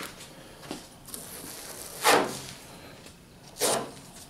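Yellow masking tape peeled off a car hood, coming away in short rasps, the two loudest about two and three and a half seconds in.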